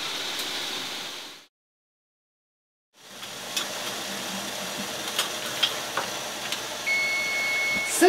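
Steady hiss of a covered steamer on the boil, with a few light clicks and a cut to silence early on. Near the end the electric range's timer gives one long steady beep, signalling that the 25-minute steaming time is up.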